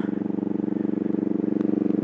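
Motorcycle engine running at a steady cruise, heard from the saddle: a constant drone with a fast, even pulse.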